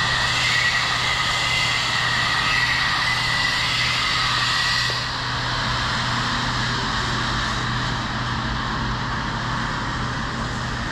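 Steady mechanical drone with a constant low hum and hiss. A faint high whine fades out about halfway through.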